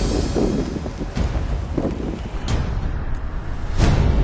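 Strong wind gusting across open ice and buffeting the microphone, with a deep low rumble. A few sharp hits cut through it, the loudest near the end.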